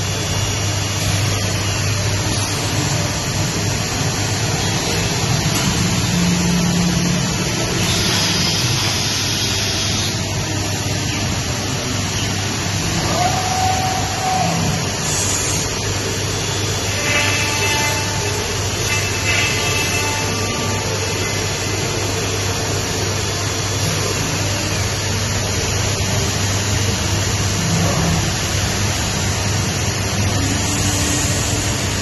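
Masterwood Project 416L CNC machining center running: a steady, loud noisy rush from the machining head and its extraction, over a constant low hum. Brief pitched tones come and go over it about midway.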